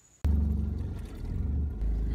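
Car cabin noise inside a Toyota: a loud, low engine and road rumble that starts abruptly about a quarter-second in, following a moment of near-silent room tone.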